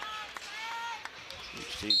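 Arena hubbub of voices and scattered small knocks during a stoppage in a basketball game. Right at the end the loud, steady, high-pitched arena buzzer sounds.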